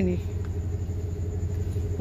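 A running engine's steady low rumble, unchanging in pitch or level.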